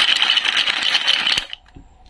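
Wooden toy fruit and vegetable pieces clattering against each other in a plastic basket as it is shaken. A dense run of clicks and knocks that stops about one and a half seconds in.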